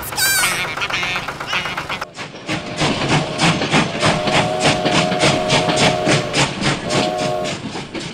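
Toy steam train's chuffing sound, an even beat of about four chuffs a second, with its whistle blown twice: one long blast about four seconds in and a short one near the end.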